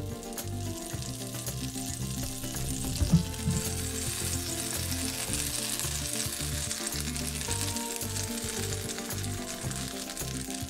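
Butter melting and sizzling in a hot nonstick frying pan, the sizzle growing stronger a few seconds in as the butter foams. A single knock about three seconds in.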